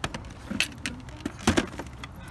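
Plastic clicks, knocks and rattles of a full-face motorcycle helmet being handled and fitted into a motorcycle's top trunk, with a sharp knock about a second and a half in.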